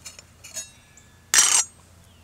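Small stainless-steel toy pot and lid clinking against each other, a few light clinks and then one louder, brief metallic clatter past the halfway mark.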